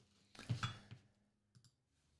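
Faint clicking: a short cluster of clicks and rustle about half a second in, then a single small click near the end.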